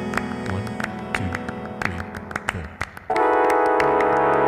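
Live-looped trombone music: a thinning layered loop with sharp percussive clicks and low gliding notes, then about three seconds in a full, loud held chord of layered trombone parts comes in all at once.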